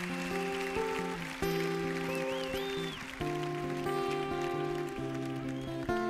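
Guitar playing the opening chords of a live song, each chord struck and left to ring, with a fresh chord roughly every one to two seconds.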